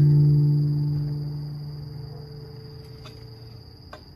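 A low note on a Rav Vast steel tongue drum, struck just before, ringing on with its overtones and slowly dying away, with a couple of faint taps near the end.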